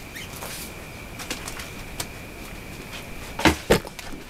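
Quiet handling noises at a desk, then two loud sharp knocks in quick succession near the end as something is accidentally bumped against the desk or camera.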